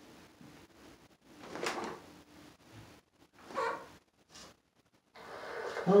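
Quiet handling noises: a few short scrapes and rustles separated by near-silent gaps, as a tinfoil phonograph is readied for recording.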